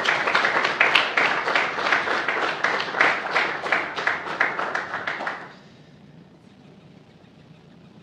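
Audience applauding, many people clapping, dying away about five and a half seconds in to quiet room tone.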